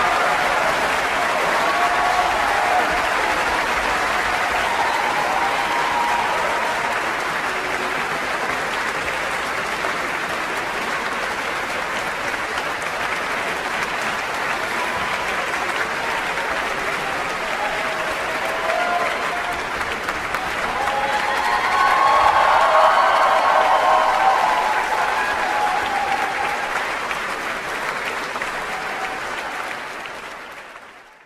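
Large concert-hall audience applauding, with cheering voices over the clapping. The applause swells louder with cheers about two-thirds of the way through, then eases off.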